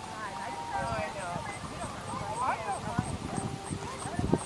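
Quiet, indistinct voices of people talking near the microphone, with scattered low thumps. A faint high-pitched ticking repeats about three times a second throughout.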